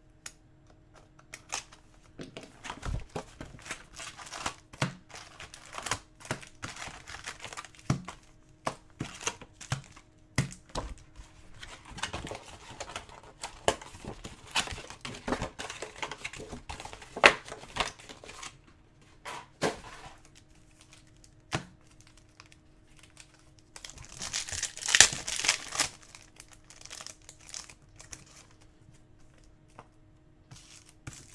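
2019-20 Upper Deck hockey hobby box being opened and its foil-wrapped card packs handled: rustling and crinkling of wrappers with many small clicks of cardboard and packs being set down, and a louder burst of crinkling about twenty-five seconds in.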